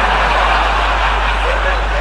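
A large audience laughing together, a loud steady wash of many voices in response to a joke.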